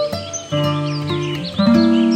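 Background music of plucked acoustic guitar notes, with quick high chirps of birdsong over it.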